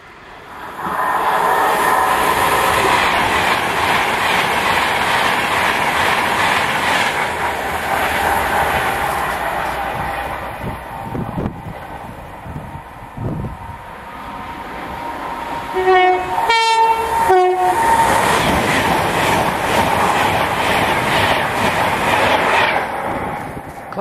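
A Class 390 Pendolino electric train passes through the station at speed, a loud, steady rush of wheel and running noise that swells about a second in and eases off around the middle. About two-thirds of the way through, a two-tone train horn sounds low–high–low, and loud train noise carries on until just before the end.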